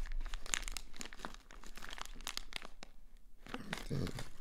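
Crinkling and crackling of packaging being handled, a dense run of small crackles that thins briefly about a second and a half in.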